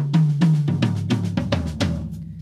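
Acoustic drum kit heard through its close mics, the toms on Audix D2 and D4 mics: a quick fill of about eight strokes a second that steps down in pitch around the toms and ends on a low tom left ringing.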